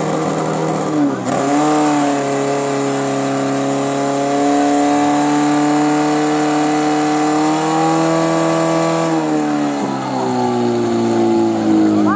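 Portable fire pump's engine running at high revs under load. Its pitch dips briefly about a second in, climbs back and holds high, then drops around nine seconds as the revs come down.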